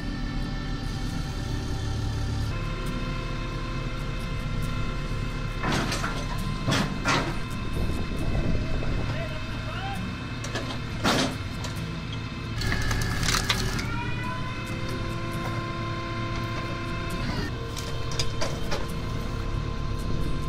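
Tractor-powered hydraulic log splitter running steadily under load, with several loud sharp cracks as a thick log splits apart.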